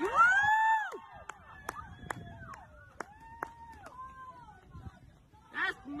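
Onlookers whooping with long cries that rise and fall in pitch: the first is loud, and several fainter ones follow. A few sharp clicks fall between the cries.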